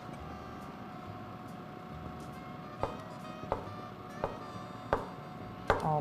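Chinese cleaver cutting white beech mushrooms on a wooden cutting board: sparse, separate knocks of the blade on the board, several about two-thirds of a second apart in the second half.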